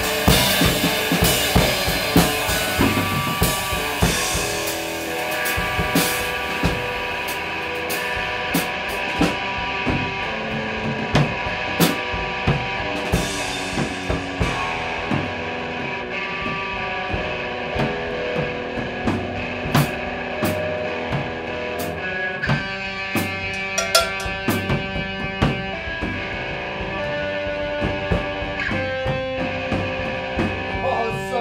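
A three-piece band playing live: a Tama drum kit and a Gibson electric guitar in an improvised instrumental passage. The drumming is dense at first, then thins after about five seconds to scattered hits under held guitar notes, and grows busier again near the end.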